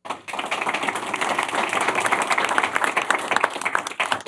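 Audience applauding: many people clapping together in a dense, even patter that starts suddenly and holds steady.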